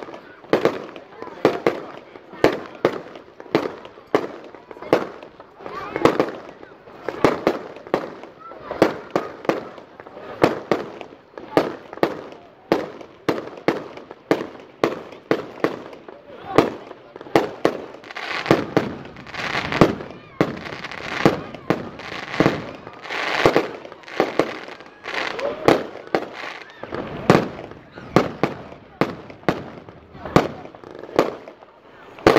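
Aerial fireworks bursting in quick succession, about two sharp bangs a second, with a denser, noisier stretch of bursts for several seconds past the middle.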